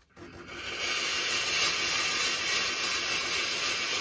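Steam iron blasting a continuous jet of steam while the steam button is held: a steady hiss that builds up over the first second, then holds. The iron is filled with a half water, half white vinegar mix, and the steam is flushing limescale out through the soleplate holes.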